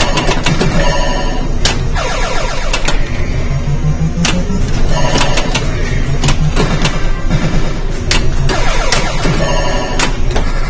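Gottlieb Black Hole pinball machine in play: a quick run of sharp clicks and knocks from the flippers and the ball striking the playfield, mixed with the machine's electronic beeps and tones, over a steady arcade din.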